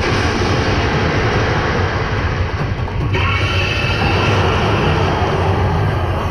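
Background music laid over the footage: a loud, dense, steady track with a strong bass line. It changes about halfway through, when a brighter upper layer comes in.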